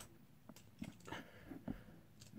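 Very quiet room tone with a few faint, soft clicks spread through it.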